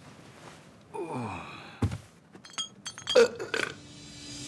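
A man's low vocal sound, like a groan or belch, sliding down in pitch about a second in. It is followed by a sharp click and a run of light, ringing clinks, with a short louder burst about three seconds in.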